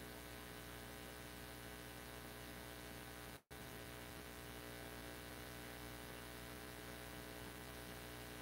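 Faint, steady electrical mains hum with many evenly spaced overtones, cut off by a brief dropout of all sound about three and a half seconds in.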